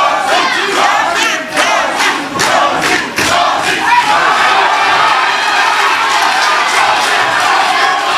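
Boxing crowd shouting and cheering loudly, with a run of sharp smacks in the first three seconds or so.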